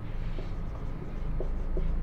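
Marker pen writing on a whiteboard: a string of short, faint strokes as letters are written.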